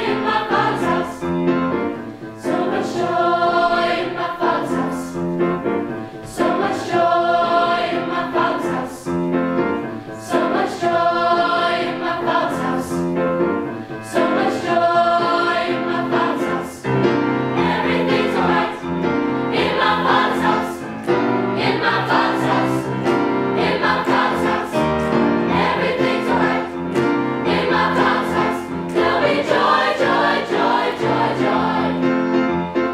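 Mixed youth choir singing a traditional gospel song in parts, with sustained chords that move steadily throughout.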